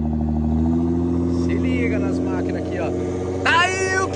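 A sports car engine idling steadily, its idle rising slightly in pitch about a second in. A voice calls out near the end.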